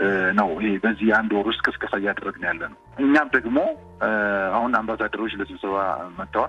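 Speech only: a person talking, with two short pauses.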